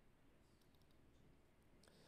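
Near silence: room tone with a few faint clicks, a small cluster about half a second to a second in and another near the end.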